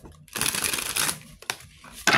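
A deck of tarot cards being shuffled: a dense rush of flicking cards lasting about a second, followed by a few separate light card taps.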